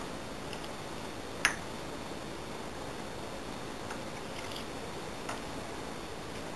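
Small metallic clicks and ticks of a lock pick and tension wrench working the pins inside a TESA T60 euro-profile lock cylinder, with one sharp, louder click about one and a half seconds in, over a steady low hiss.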